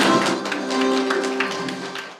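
Music with held notes and many short plucked or tapped attacks, fading away near the end.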